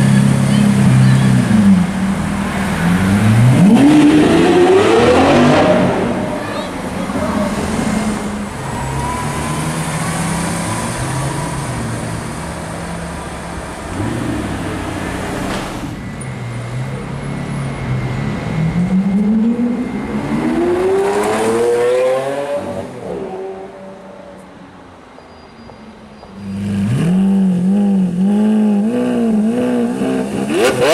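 Lamborghini Aventador V12 engines. A car accelerates hard away, its pitch rising steeply. Later another car accelerates with a second long rise in pitch. Near the end a stationary Aventador runs at a fast, wavering idle with quick blips of the throttle.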